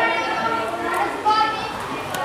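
Only speech: girls' voices talking.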